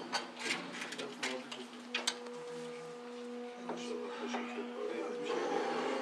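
Metal spoons clinking and scraping on small plates as several people eat, in short scattered clicks, over low voices and a steady low hum.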